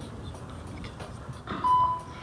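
Voicemail beep on a phone line: one steady tone about one and a half seconds in, lasting under half a second, after low line hiss. It marks the start of message recording.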